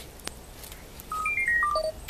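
A quick run of about six short electronic beeps at different pitches, mostly stepping downward, about a second in, preceded by a single click.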